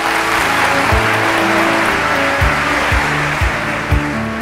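Audience applauding over sustained orchestral music, with a few low drum strokes, about four in all.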